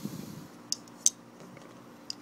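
Two sharp metallic clicks about a third of a second apart, the second louder, as two titanium folding knives are handled, with a soft rustle of hands before them.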